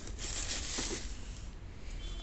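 Tissue paper rustling and crinkling in a cardboard shoebox as a hand pushes it aside, a dry rustle lasting about a second near the start.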